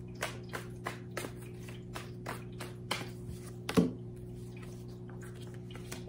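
A tarot deck being shuffled by hand, the cards giving short clicks about three times a second, with one louder tap about four seconds in before the clicking thins out.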